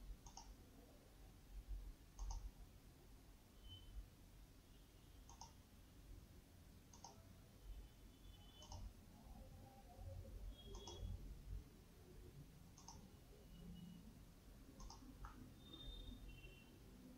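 Faint computer mouse button clicks, about one every two seconds, against near silence.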